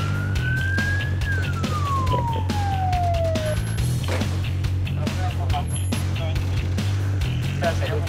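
A police siren wail climbing to its top about a second in, then falling away and stopping about three and a half seconds in. It sounds over background music with a steady low beat.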